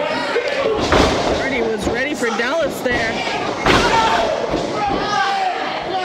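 Two heavy slams of wrestlers' bodies landing on the wrestling ring's mat, one about a second in and a louder one near four seconds. Voices shout throughout.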